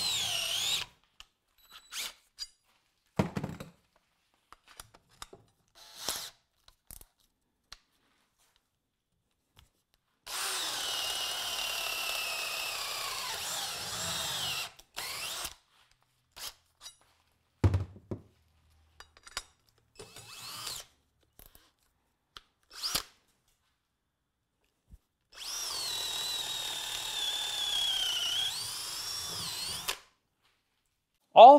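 Three runs of compact cordless drills in high-speed mode boring a ship auger bit through a pressure-treated pine 4x4: one run ends about a second in, another lasts from about ten to fifteen seconds in, and the last starts about twenty-five seconds in. In each run the motor whine drops in pitch as the bit loads up in the wood. Short knocks and clicks fall between the runs.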